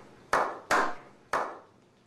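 A slow clap: three sharp, separate hand claps, unevenly spaced, each ringing out briefly before the next.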